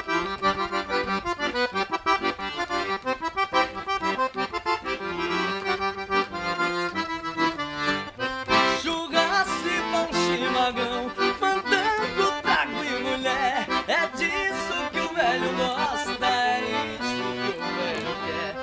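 A small piano accordion playing a lively sertanejo-style tune, with steady chords in the bass and a melody above. From about halfway, a man's voice sings along.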